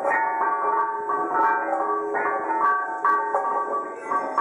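Tuned stone lithophone being played: a melody of bright, ringing struck notes at several pitches, a new note about every half second, each ringing on under the next.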